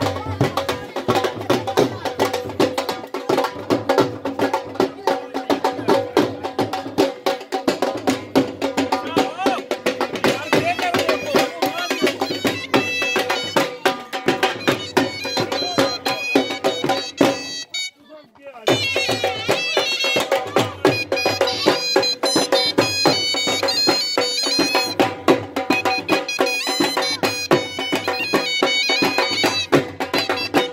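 Traditional procession music played on pipes: a melody over a steady drone, with drumbeats. It cuts out for about a second midway, then resumes.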